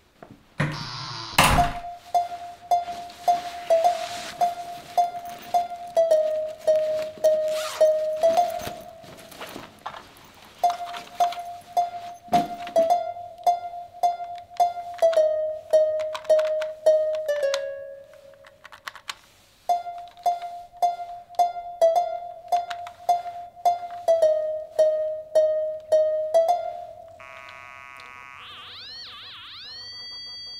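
A door shuts with a loud thunk about a second and a half in. Then suspenseful background music follows: a plucked note repeated about twice a second over a held tone, in three phrases with short breaks. Near the end a warbling electronic tone with rising-and-falling sweeps comes in, the sound effect of a handheld EM detector picking up readings.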